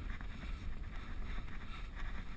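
Wind rush and low rumble on a GoPro's microphone as a mountain bike rolls along a dirt trail, with faint rattles from the bike over the ground.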